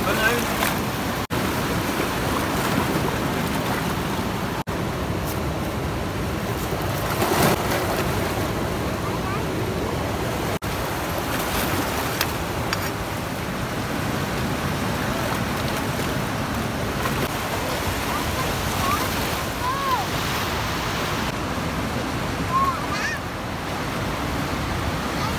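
Fast mountain river rushing over rocks: a steady, loud wash of white water, broken by a few very brief dropouts.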